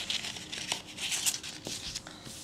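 A sheet of paper rustling as it is handled and slid onto a wooden table, with a couple of faint taps.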